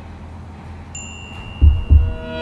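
A soft, high chime tone rings out about a second in, and two deep heartbeat-like thumps follow near the end: a dramatic sound-effect cue.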